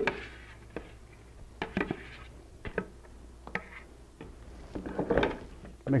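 A flat spatula scraping and knocking against a plastic bucket as mixed two-part polyurethane foam is scraped out into a second bucket: scattered short knocks and scrapes, with a longer scrape about five seconds in.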